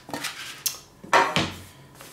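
Trangia aluminium cookware being handled: a few sharp metallic clinks and a clatter as the pan is lifted off the stacked pots and set down, the loudest about a second in with a short ring.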